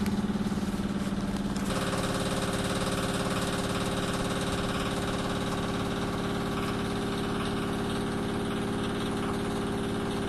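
A steady, unchanging engine hum, like a motor idling, whose tone shifts abruptly about two seconds in.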